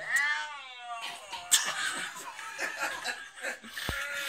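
A man bellowing through the neck of an empty Coke bottle to imitate a red deer stag's rutting roar: one drawn-out call in the first second, rising then falling in pitch. Laughter follows.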